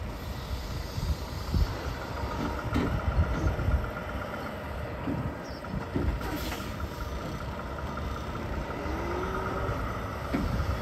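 Volvo semi-truck's diesel engine running at low speed as the tractor backs its trailer, with uneven low surges of power. A thin, steady high tone sets in about two and a half seconds in, and a short rising whine comes near the end.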